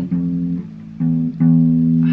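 Electric bass guitar plucked in slow single notes at the second fret. One note at the start dies away, and two more follow about a second in, the last one held and ringing.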